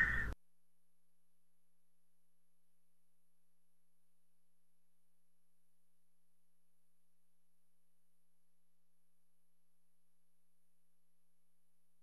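A man's word cut off abruptly right at the start, then near silence with only a faint steady hum.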